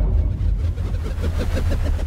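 Produced intro sound effect: a deep rumble with a fast, even pulsing of about seven or eight beats a second, like an engine running.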